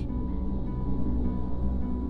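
Dramatic background music: low notes held steady under a faint high tone, with no speech.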